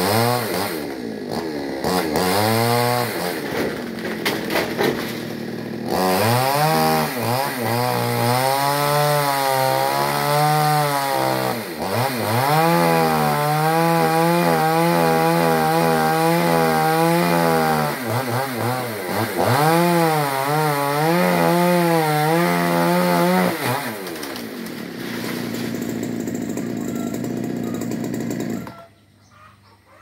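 Petrol chainsaw cutting through a tree branch, its engine revving up and down and then held at high revs for several seconds at a time. It drops back to a lower, quieter running tone about two-thirds of the way through and cuts off abruptly shortly before the end.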